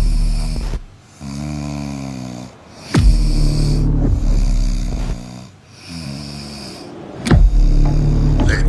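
A man snoring loudly in a slow rhythm. Every four seconds or so comes a long, rough snore, followed by a quieter, pitched breath out.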